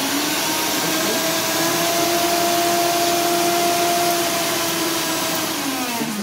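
Philips 600-watt Indian mixer grinder motor running with no jar fitted, a steady whine over a rushing hum. It is running normally on 220 volts from a 110-to-220-volt step-up converter. Near the end its pitch starts to drop as it winds down.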